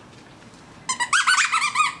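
Rubber squeaky dog toy squeaked rapidly over and over as a dog plays with it: a quick run of high, rising-and-falling squeaks starting about a second in.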